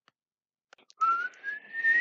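A boy whistling through his nose: a single breathy whistle starts about a second in and slowly rises in pitch.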